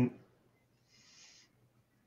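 The tail of a man's hummed "mm" at the start, then near silence with a faint brief hiss about a second in.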